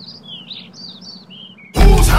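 Small birds chirping: a quick string of short, high, falling notes over a faint low hum. Near the end a sudden loud burst, a voice shouting or bellowing, cuts in over them.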